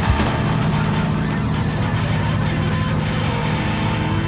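Heavy rock music: a dense, steady wall of distorted electric guitar.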